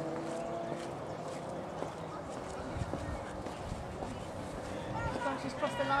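Open-air ambience with distant voices, and faint hoofbeats of a horse cantering on a sand arena. A voice starts speaking near the end.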